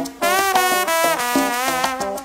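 A solo trombone plays a melodic phrase of held, wavering notes, opening a salsa song after a brief break.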